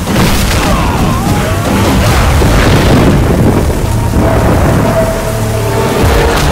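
Film fight soundtrack: a heavy, boom-like impact as a body slams onto the ground, over the steady noise of heavy rain. A dramatic background score runs underneath, settling into sustained low tones in the second half.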